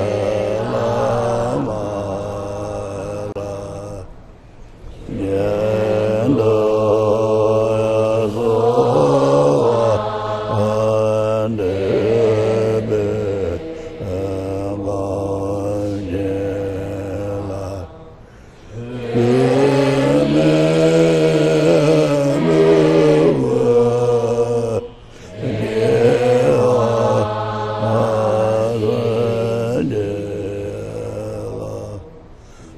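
Slow, melodic chanting of a Buddhist supplication prayer to the guru, sung in long drawn-out phrases. The phrases break briefly for breath three times.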